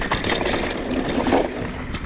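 Mountain bike riding fast down a dirt singletrack: steady tyre rumble on the dirt with scattered knocks and rattles from the bike over bumps.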